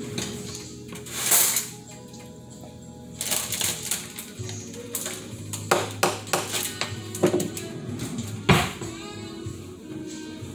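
Background music with dishes clinking and knocking at a kitchen sink as a bowl is rinsed and washed out. The clatter comes as a quick run of sharp knocks in the second half, with the loudest near the end.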